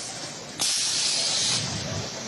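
A press on an LED bulb assembly line lets out a sharp burst of compressed air while pressing the circuit board into the bulb body. The hiss lasts about a second, starting suddenly about half a second in and cutting off sharply.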